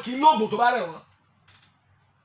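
A man speaking into a studio microphone for about the first second, then near silence with a brief faint patter of small clicks about a second and a half in.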